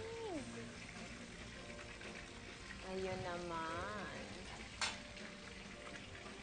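Quiet voices over a faint, steady hiss, with one sharp click about five seconds in.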